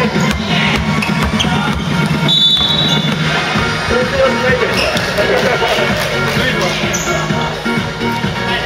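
Music playing over the sounds of a basketball game on a wooden gym floor: a ball bouncing and voices, with a brief high squeak about two and a half seconds in.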